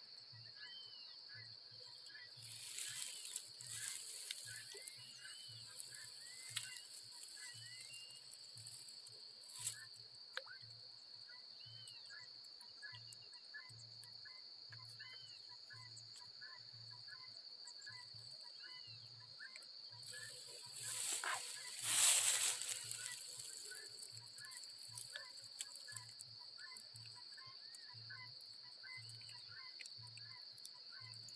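A steady, high insect chorus over the lakeside, with many short chirping calls scattered through it. Two rushes of noise break in, a short one a few seconds in and a louder, longer one a little after twenty seconds.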